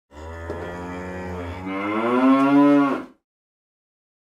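Intro sound effect: one long, low pitched call in two parts, the second part louder and a little higher, cutting off about three seconds in.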